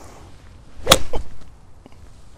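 Golf iron swung down and striking a ball off the turf: one sharp crack about a second in, with a fainter second click just after it.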